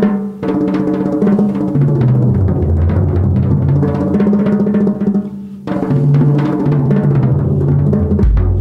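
Drum-kit toms tuned to a scale, played with hard mallets in fast continuous rolls, the notes stepping down from the higher toms to the lowest and back up. The snares are off the snare drum, so it rings as a plain tom. There is a short break about five and a half seconds in.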